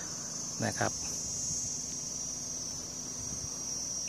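Steady, high-pitched insect chorus shrilling without a break.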